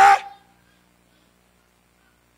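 The end of a man's loud shouted word through a microphone, cutting off about a third of a second in, followed by near silence with only a faint steady hum.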